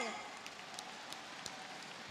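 Faint, even applause from a concert audience, greeting a band member as she is introduced.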